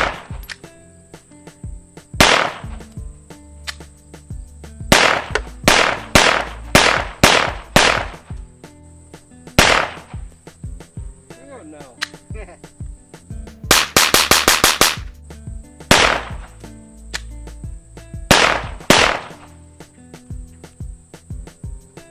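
Hi-Point C9 9mm pistol firing Pyrodex black-powder loads: a dozen or so sharp shots, some singly and some in quick strings, broken by pauses. The pistol is fouled with heavy black-powder buildup and is starting to have feeding and ejection failures.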